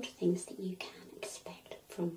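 A woman speaking softly in short phrases.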